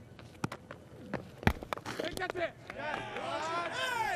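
Several sharp knocks out on the field, the loudest about one and a half seconds in. Then cricketers' excited shouts, rising and falling, from about two seconds on, as the fielding side goes up for a wicket.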